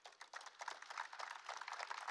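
Faint, rapid clicking, many clicks a second, starting suddenly.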